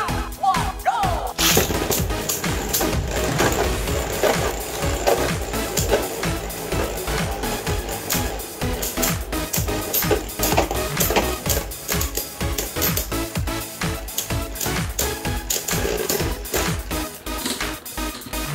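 Two Beyblade Burst spinning tops, Gatling Dragon and Astral Spriggan, launched into a clear plastic stadium about a second and a half in. They then spin and clash with rapid, irregular clacks against each other and the stadium wall, over background music.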